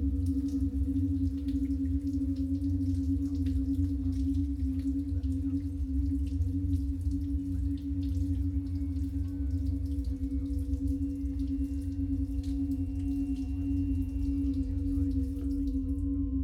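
Steady electronic drone of massed sine-wave oscillators: one strong held tone around D-flat, a fainter higher tone and a low rumble underneath, unchanging throughout. Faint scattered ticks sound above it.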